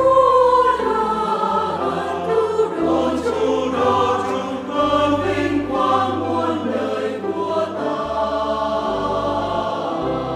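Church choir singing a Vietnamese hymn in several voice parts, accompanied by piano and bass guitar. The bass holds low notes that change every second or so.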